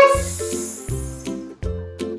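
Background children's music with plucked strings over a low bass note repeating about every three-quarters of a second. A short voice-like note opens it, followed by a high hiss that fades out after about a second.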